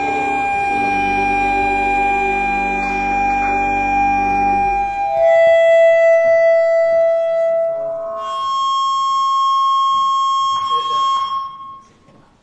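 Church organ holding sustained chords over a deep pedal note. The bass drops out about five seconds in, higher held notes carry on, and a single high note sounds until the music stops near the end.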